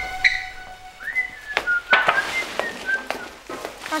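A person whistling a short tune of several quick notes. Knocks and rustling of plastic come with it as a homemade plastic-and-stick balloon is carried in, and held music notes fade out in the first second and a half.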